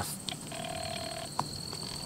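Night insects singing a steady high, thin trill. About half a second in, a brief lower steady tone lasts under a second, followed by a single click.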